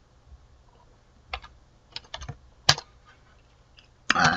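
Computer keyboard being typed on: a handful of separate keystrokes from about a second in, one sharper than the rest, as a line of code is finished.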